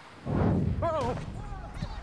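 A sudden thud as a young hockey player collides and falls on the ice, followed about half a second later by short wavering cries.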